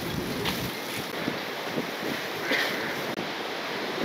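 Steady outdoor noise of wind on the microphone and sea surf, with a few faint brief sounds over it.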